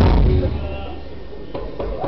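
A live acoustic band with guitar and cello stops on one sharp accented hit, which rings and dies away into a quieter stretch of voices in the hall; two light knocks come near the end.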